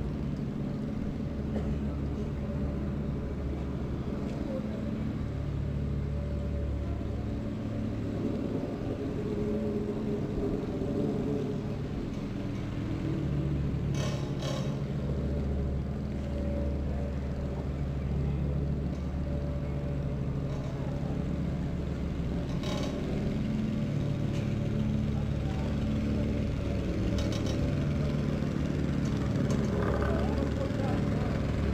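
City street ambience: a steady low engine rumble from traffic and machinery, with a few sharp knocks about halfway through and again near the end.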